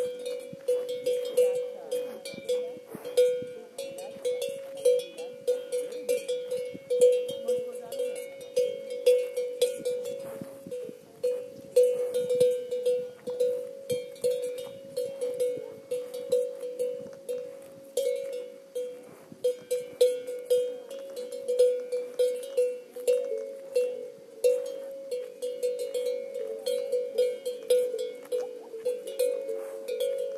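Cowbell on grazing cattle clanking irregularly, a few strikes a second, each with a short metallic ring.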